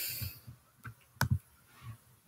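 Handling noise from the recording device being moved: a hiss dies away in the first half-second, then three sharp clicks close together and a soft knock near the end.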